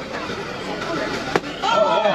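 A thrown dart hits the wooden balloon board with one sharp crack about a second and a half in, and a high voice exclaims just after. Crowd chatter runs underneath.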